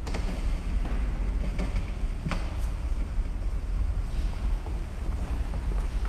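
Steady low rumble on the microphone, with a few faint knocks and clicks, the clearest about two seconds in.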